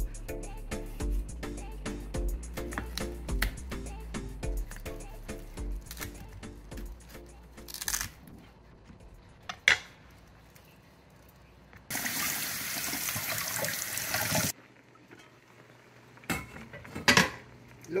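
Background dance music with a steady bass beat for the first several seconds, then a few sharp knocks of a kitchen knife cutting through a corn cob on a wooden cutting board, one of them loud. Water runs steadily for about two and a half seconds, followed by two more knocks.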